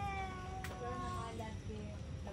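Voices singing in held, slightly gliding notes, more than one line sounding at once, over a steady low rumble of background noise.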